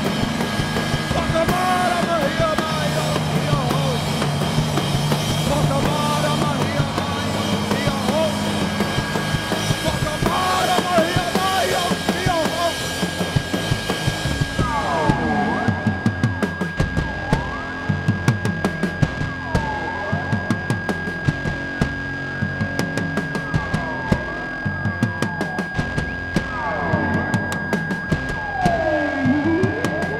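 Live rock band's instrumental outro: a drum kit playing under electric guitar noise whose pitch sweeps up and down as effects pedals are twisted. About halfway through the high hiss falls away, leaving the drum hits, the gliding guitar sounds and a steady high tone.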